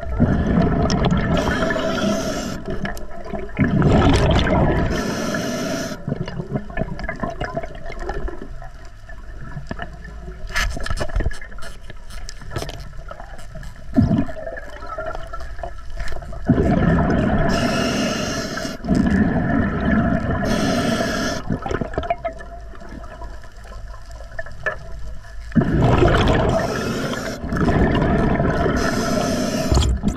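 A scuba diver breathing underwater through an Atomic regulator: each exhalation sends a rush of bubbles out of the exhaust, with the hiss of air on each inhalation. There are several breaths, with a longer quieter stretch in the middle.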